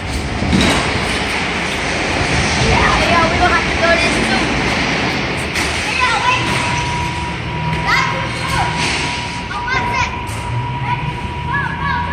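Steady loud background noise with scattered children's voices; a steady high-pitched tone comes in about halfway and holds on.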